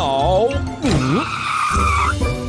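Cartoon car tyre-screech sound effect, a skid lasting about a second in the second half, over upbeat children's background music with a few swooping cartoon voice sounds near the start.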